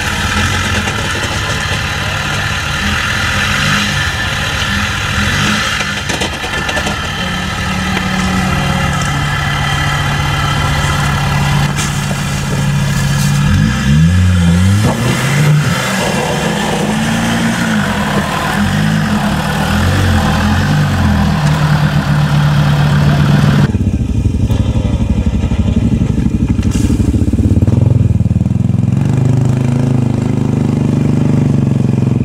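An off-road Land Rover Defender's engine works under load over rough ground, revving up and down several times in a row through the middle. About three-quarters of the way through the sound switches abruptly to quad bike engines running and revving.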